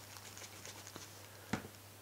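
White eraser rubbing over a scuff on a white Ghostface mask: faint, quick scratchy strokes, then a single sharp tap about one and a half seconds in.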